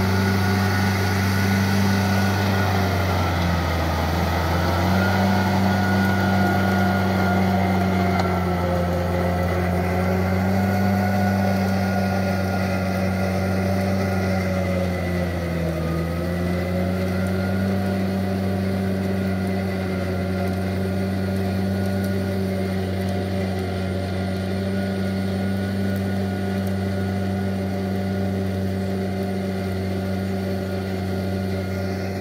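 Yanmar tractor's diesel engine running steadily under load while its rotary tiller churns wet paddy mud, the engine pitch dipping briefly twice, about four seconds in and again about sixteen seconds in.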